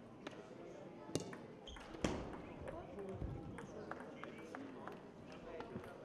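Table tennis ball struck by paddles and bouncing on the table, two sharp clicks about a second apart near the start, then a run of lighter taps, with a murmur of voices in the hall behind.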